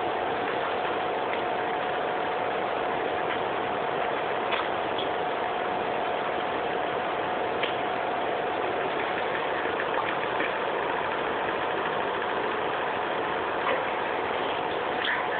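Steady background hum with an even hiss and a faint constant tone, broken by a few faint clicks.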